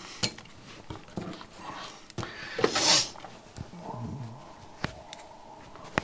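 Light clicks and knocks of a perfboard being handled and set into a circuit-board holder, with a short hissy rush near the middle as the loudest sound.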